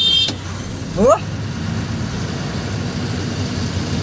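Dumper truck engine running, a steady low rumble heard from inside the cab.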